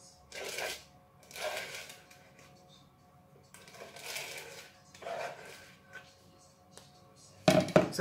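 A knife scraping thick chocolate cake batter from the inside of a mixing bowl, in four separate strokes of about half a second each. A few sharp knocks come just before the end.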